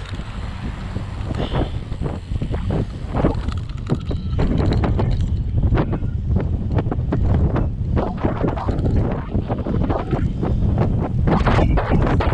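Wind buffeting the microphone of a camera on a moving bicycle: a heavy low rumble with rapid crackles through it, growing louder about four seconds in.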